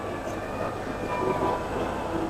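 Steady background din of a busy exhibition hall: an even, continuous rumbling noise with no distinct event standing out.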